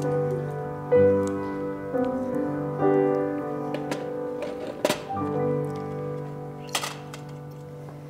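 Slow keyboard music of sustained piano-like chords, a new chord about every second, fading toward the end. A short sharp rustle or click cuts across it a little past the middle and again near the end.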